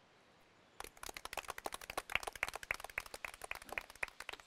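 A small group of people clapping, starting about a second in; the separate hand claps can be heard distinctly.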